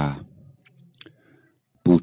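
A man's voice speaking Thai slowly into a close microphone trails off, leaves a pause of about a second and a half with one faint click in it, then resumes just before the end.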